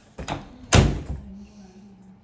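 A wooden interior door banging shut about three-quarters of a second in, after a lighter knock just before; the bang dies away over about half a second.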